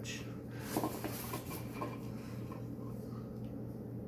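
Soft rubbing and rustling of wool yarn being pulled and stretched between the fingers while hand-spinning on a Navajo spindle, faint and scattered, over a steady low hum.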